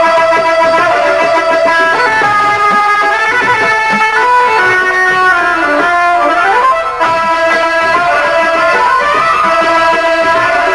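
Live Punjabi folk instrumental music: a plucked-string lead plays a melody with pitch slides, over percussion. Near the middle the melody glides down and back up, with a brief break just after.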